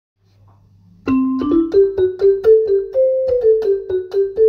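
Outro music: a keyboard playing a simple melody of struck notes, about two or three a second, each dying away. It starts about a second in, after a moment of near silence.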